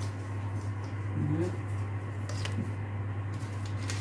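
Steady low hum with a few light clicks and rustles from fingers handling something small over a glass mixing bowl. A short, soft, low rising sound comes about a second and a half in.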